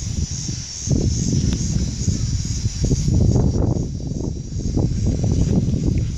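Wind buffeting the phone's microphone: an uneven low rumble that swells and falls, over a steady high hiss.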